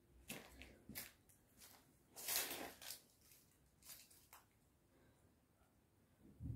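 A man breathing out hard in short hissing exhales as he swings a kettlebell, the loudest about two seconds in, with faint shuffling between them; it goes nearly silent in the last second and a half.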